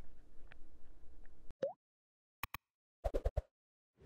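Cartoon-style pop sound effects from an animated end screen: a short rising bloop, two quick clicks, then a rapid run of four or five plops, over dead silence.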